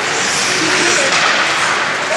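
Steady din of an ice hockey game in an indoor rink: skating and play on the ice, with faint distant voices.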